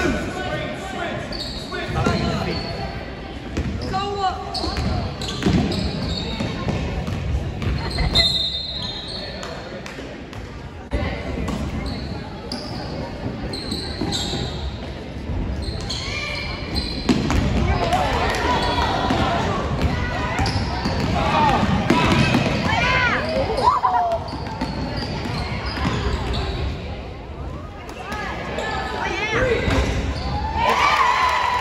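Basketball bouncing on a gym floor during play, with voices of players and spectators echoing around the hall.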